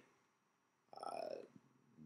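A man's single drawn-out hesitation "uh", about a second in, otherwise near silence.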